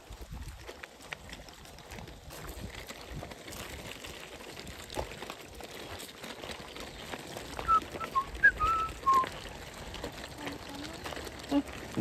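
Footsteps and stroller wheels crunching on a gravel driveway, with a few short, high whistled notes about eight to nine seconds in.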